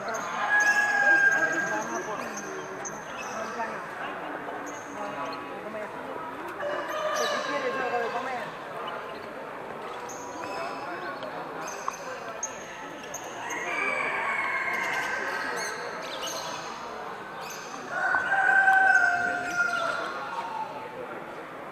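Roosters crowing four times, the loudest about a second in and near the end, over steady background chatter of voices.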